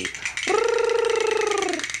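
A person's voice holding one high falsetto "ooh" for just over a second, after a short breathy laugh; the note fades and dips slightly at the end.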